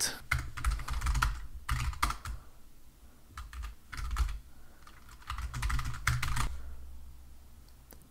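Computer keyboard typing: keystrokes in four short bursts with pauses between them, over a steady low hum, thinning out near the end.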